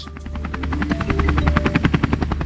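Helicopter in flight, its rotor beating in a fast, even pulse over a low engine rumble.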